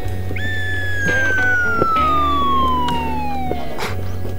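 A comedic slide-whistle sound effect gliding steadily down in pitch for about three seconds, over background music.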